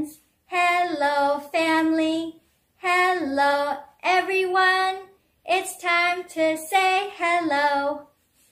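A woman singing a simple hello song in English unaccompanied, in short held phrases with brief pauses between them.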